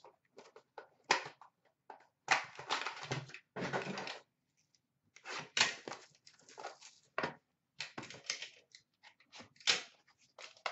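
Hands handling trading cards and a cardboard card box on a counter: irregular rustling, sliding and light knocks in short bursts with small gaps.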